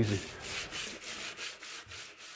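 Hand sanding a length of timber on a workbench: quick back-and-forth strokes of abrasive on wood, several a second.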